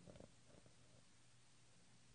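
Near silence: room tone with a faint steady low hum and a few faint brief sounds in the first half-second.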